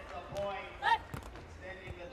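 Sharp slaps of a beach volleyball struck by hand during a rally, with a short voice call about a second in, the loudest sound.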